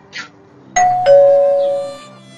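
Two-tone doorbell chime: a ding-dong, a higher note followed about a third of a second later by a lower note that rings on and fades.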